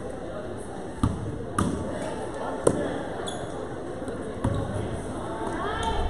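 A basketball bouncing on a gym floor: four separate thuds at uneven intervals, over the murmur of spectators' voices in a large gym.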